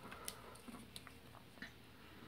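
Faint handling noise: a few light clicks and a soft rub as fingers turn a plastic bottle in the hand.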